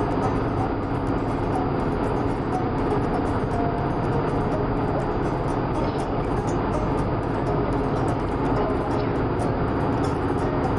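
Steady road and engine noise inside a moving car's cabin, with music playing underneath.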